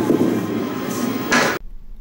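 Candlepin ball rolling down a wooden bowling lane: a steady rumble, with a brighter, noisier rush about a second and a half in, then the sound cuts off abruptly.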